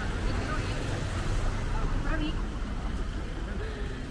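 Outdoor street ambience in a pedestrian square: indistinct voices of passersby over a steady low background rumble.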